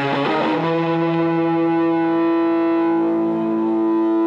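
Distorted electric guitar in an emo/punk song: quick rhythmic strumming gives way about half a second in to a single chord left to ring steadily.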